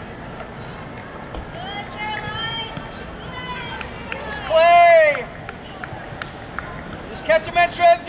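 Voices shouting short calls across a soccer field, each call rising and falling in pitch: a few scattered calls, the loudest about four and a half seconds in, and a quick run of shouts near the end.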